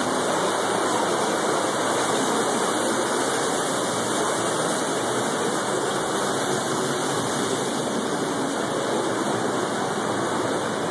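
Steady rush of a creek flowing through a rock gorge: an even, unbroken water noise.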